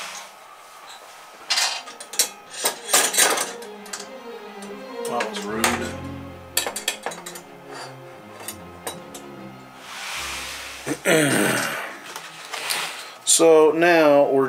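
Small metal parts and hand tools clinking and rattling as they are handled at a workbench, sharpest in the first few seconds. Background music comes in a few seconds later, and a voice starts just before the end.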